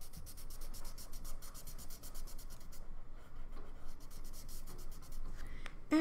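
Felt-tip marker colouring on paper in quick, even back-and-forth strokes, with a short break about halfway through.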